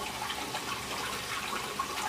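Water from an aquaponics siphon's straight down tube, with no double elbow, pouring steadily into a fish tank and splashing and bubbling as it aerates the water. This tube runs a bit noisy, which the owner puts down to a higher water velocity.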